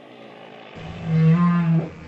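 Underwater recording of a whale call: a faint hiss, then, about three-quarters of a second in, a low, long call that holds close to one pitch for about a second before it fades.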